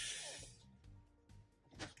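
Basketball jersey fabric rustling as it is shaken out and laid flat: one short swish at the start, then quiet, over faint background music.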